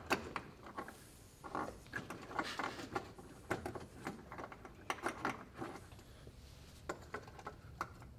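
Irregular small clicks, knocks and rattles of hands working a bulb socket into a car's taillight housing from inside the trunk.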